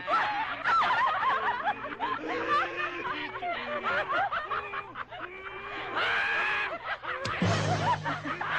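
Several young men laughing loudly together, overlapping high-pitched laughs, over background music. Near the end a mixed group of men and women takes up the laughter.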